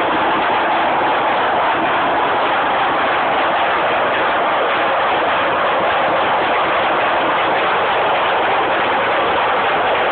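24-carrier horizontal hose braiding machine running at a steady pace: a loud, even mechanical rattle that does not let up.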